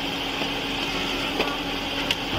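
A vehicle engine idling steadily, a constant low hum over general street noise, with a faint click about one and a half seconds in.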